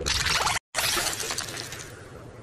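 Cartoon sound effect: a dense run of rapid clicks that breaks off in a brief dead silence about half a second in, then resumes as a fainter crackle that fades away.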